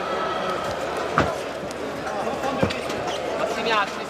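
Two sharp thuds in a boxing ring, about a second and a half apart, as blows land or feet strike the canvas, over the chatter of an arena crowd.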